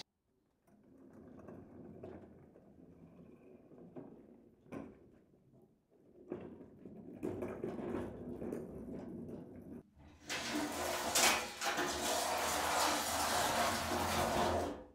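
Heavy workshop machines on castor wheels being rolled across rough ground and a hard floor: a rumbling rolling noise in several short sections, with a knock partway through, loudest near the end.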